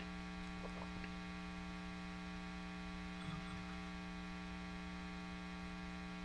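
Steady electrical mains hum, a low buzz with a ladder of overtones, with one faint brief sound a little past the middle.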